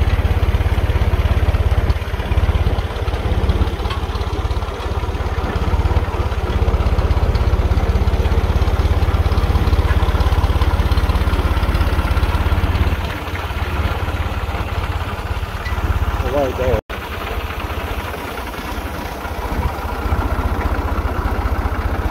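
Wind buffeting a phone microphone in open country: a loud, steady low rumble with gusty flutter, broken by a short drop-out from an edit about 17 seconds in.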